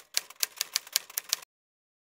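Typewriter keys clicking in a quick, even run of about eight strokes a second, a typing sound effect laid under text being typed onto the screen; the clicks stop abruptly about one and a half seconds in.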